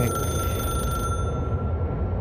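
A steady high-pitched electronic ringing tone held for about two seconds over a low drone, in the music video's soundtrack; its brighter overtones thin out about halfway through.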